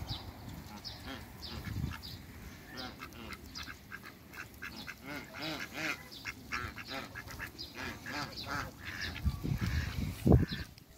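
Mixed flock of ducks and geese calling: a busy, overlapping run of short quacks and honks, thickest around the middle.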